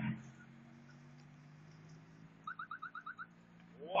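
A quick run of about seven short, slightly rising chirps, evenly spaced and lasting under a second, over a steady low hum.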